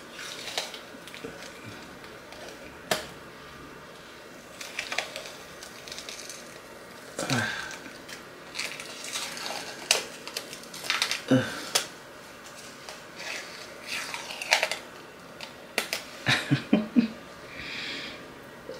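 A peel-off face mask being pulled off the skin in strips: irregular sticky crackles and small tearing clicks, coming in clusters.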